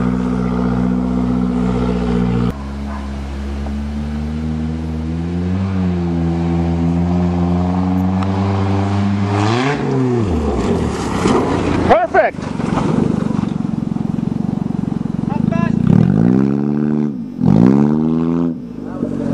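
A 1992 Toyota Corolla's four-cylinder engine pulling hard at steady revs, then easing, then climbing again as the car runs at a dirt jump at a bit over 40 km/h. The revs swell and drop about ten seconds in, a short bang comes about two seconds later, and near the end the engine revs up and down.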